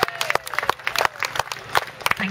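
A small audience applauding, with distinct, uneven hand claps.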